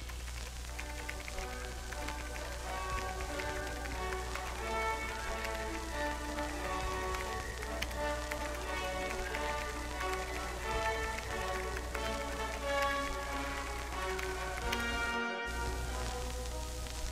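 Background music: a mellow track of short melodic notes over a steady low hum and an even, rain-like hiss, breaking off briefly about fifteen seconds in.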